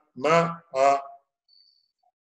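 A man's voice speaking two short drawn-out syllables, 'na… a', then a pause with a faint, brief high steady tone near the end.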